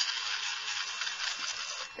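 Dremel Stylus cordless rotary tool grinding into the thin white plastic of a model car body panel, a steady high grinding hiss.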